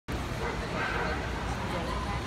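Indistinct chatter of a crowd in a large hall, with a steady low rumble of hall noise and a dog barking in the background.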